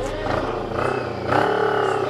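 CFMoto NK400 motorcycle's parallel-twin engine running at low speed, with a steady low rumble that grows louder in the second half.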